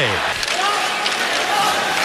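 Steady crowd noise in an ice hockey arena during play, an even wash of sound with a few faint held tones in it.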